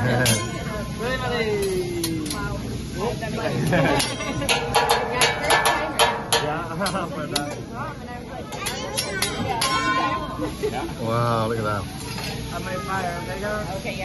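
Hibachi chef's metal spatula and fork clacking in a quick run of sharp strikes, about four a second for several seconds, amid table chatter and laughter.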